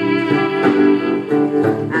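Live band music: electric guitar and bowed violin playing together, with held notes over a plucked guitar line.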